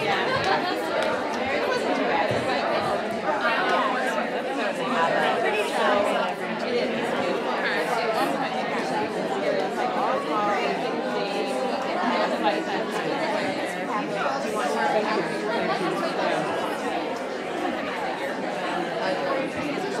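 Crowd chatter: many people talking at once in a large room, a steady mix of overlapping voices with no single voice standing out.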